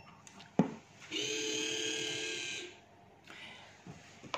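The mini Crossbow antenna tracker's servo motors give a steady whine for about a second and a half as the pan-tilt head moves at start-up after power-on. A single knock from handling comes shortly before.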